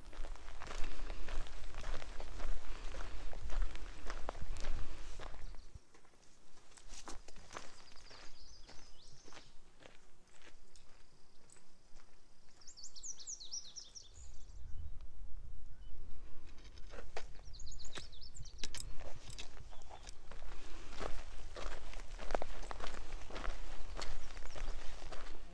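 Hikers' footsteps on a dirt mountain trail, irregular steps and scuffs, with a low rumble of wind on the microphone for the first few seconds and again from about halfway on. A bird chirps a few times in the quieter middle stretch.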